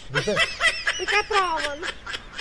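A person snickering and laughing at fairly high pitch, run together with speech, with a long falling cry near the end.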